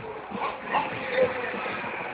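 Indistinct chatter of nearby onlookers: short, scattered fragments of voices with no clear words.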